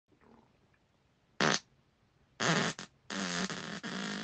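Human farts in a quick series: a short, sharp one about a second and a half in, a longer pitched one about a second later, then a long pitched fart that starts near the end and carries on.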